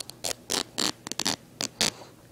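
A holey old T-shirt being torn apart by a child's hands: a quick run of about seven short, rasping rips.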